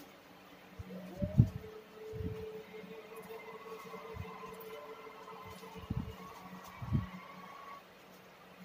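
Dull low knocks, four of them with the loudest about a second and a half in, as a cake is cut with a knife in its cardboard box on a table and a slice is lifted out. A faint steady tone hums underneath.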